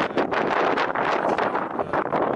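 Wind buffeting the camera's microphone: a loud, uneven rushing that comes and goes in quick gusts.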